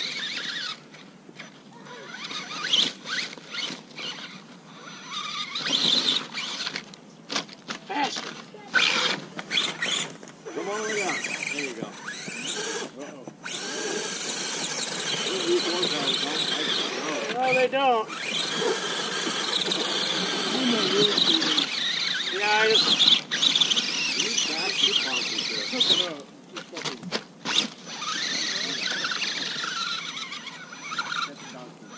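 Scale RC rock crawler's electric drive motor and geartrain whining in repeated on-off bursts as it is driven up a rocky climb, the pitch sweeping up with each burst of throttle. Indistinct voices are mixed in.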